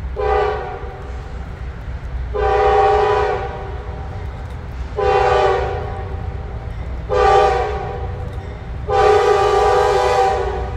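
Norfolk Southern freight's diesel locomotive air horn sounding the grade-crossing signal as the train approaches a road crossing: after a brief blast at the start come two long blasts, a short one and a final long one. The locomotives' low engine rumble runs underneath.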